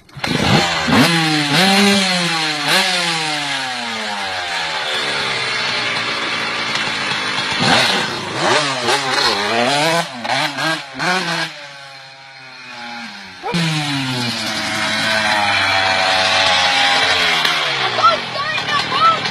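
Dirt bike engine catching at once on a kick-start, then revved up and down several times. It fades a little after the middle as the bike rides away and grows louder again toward the end as it comes back.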